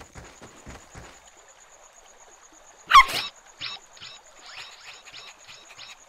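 Cartoon sound effects of a small dog: quick light pattering footsteps in the first second, then one short pitched yip about three seconds in. After the yip comes a run of short high blips, about three a second.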